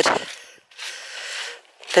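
A single breath drawn in, lasting about a second: a soft hiss with no low rumble, between the end of one spoken phrase and the start of the next.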